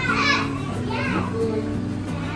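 Young children's voices over background music whose low notes step from one pitch to the next.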